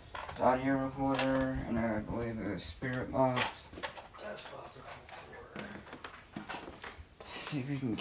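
A man's voice, sounding drawn-out and sing-song, for the first three seconds or so. Then faint clicks and rustles of handling and movement.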